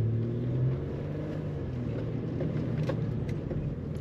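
Interior engine and road noise in a 2009 Pontiac G6 GXP on the move, its 3.6-litre V6 giving a steady low hum. The hum rises slightly, then drops back a little under a second in.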